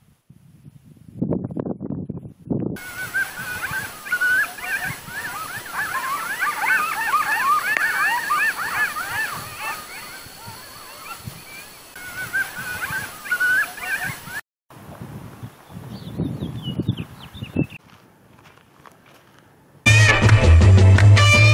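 Many overlapping high, wavering animal cries, whines and yelps, for about eleven seconds, cut off abruptly. Low rumbling noise comes before and after them, with a few faint high chirps near the end.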